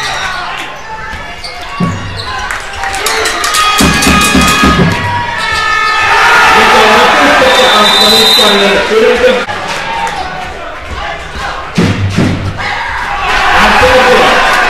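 Basketball game sound in an arena hall: the ball bouncing on the hardwood court, with crowd noise swelling about six seconds in and again near the end.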